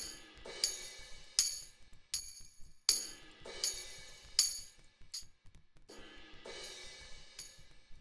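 Sampled tambourine from the Reason Drum Kits rack extension playing a looped pattern, a jingling hit about every three-quarters of a second, its tone shifting as its low and high EQ bands are turned during playback.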